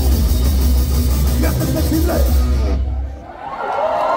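Live rock band playing loud, with heavy bass, drums and electric guitar; the music cuts off about three seconds in. A crowd cheering rises near the end.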